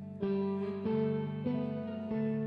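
Electric guitar chords, cleanly played, each struck and left ringing: three new chords come in about half a second apart, a slow opening that builds a little louder with each strike.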